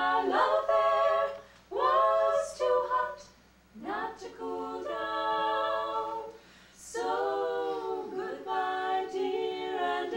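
Voices singing an a cappella score in close harmony, held chords sung in phrases broken by short pauses.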